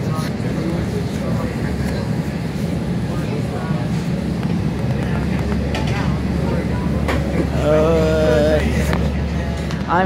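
Steady low rumble inside the passenger car of a moving SMART diesel multiple-unit train, the running noise of the railcar carried through the cabin as vibration.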